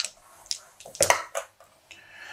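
Dice rattling in cupped hands and then rolled onto the gaming table: several short clicks and clatters, about half a second apart.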